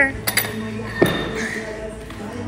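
Metal clinks of a barbell clip being worked on the bar against the weight plates: two quick clinks just after the start and another about a second in.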